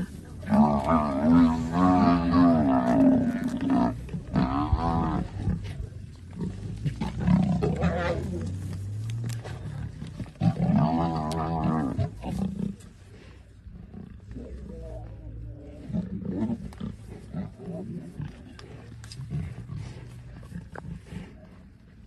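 Lions and a Cape buffalo calling during a kill: loud growling and bellowing calls in the first few seconds, another loud call at about eleven seconds, then quieter, rougher calls.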